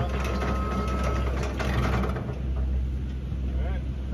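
Genie GS-2032 electric scissor lift driving across pavement, its electric drive giving a thin steady whine that drops out a little over a second in, over a steady low rumble.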